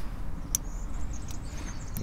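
Outdoor ambience: a low steady rumble with faint high chirping, and one sharp click about half a second in.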